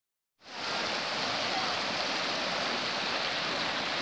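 Floodwater rushing over a shallow rocky ford in a rain-swollen river: a steady, even rush of water that starts about half a second in.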